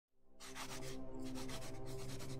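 Scratchy pen-on-paper drawing strokes in several short bursts, over a low sustained musical drone.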